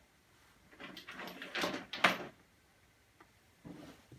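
Fabric bags being handled and shifted on a wooden desk: a rustle that builds over about a second and ends in a sharp click about two seconds in.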